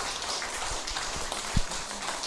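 Audience applauding, an even patter of many hands clapping. A short low thump about one and a half seconds in.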